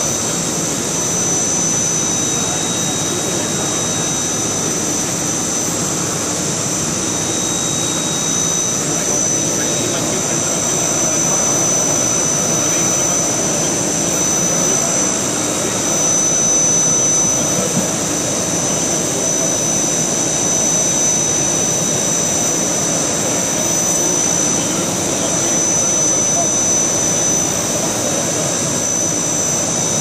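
CNC machining centre's high-speed spindle running with a steady high whine while the cutter mills an impeller in 5-axis simultaneous motion on a tilting rotary table, over a constant rush of cutting and machine noise.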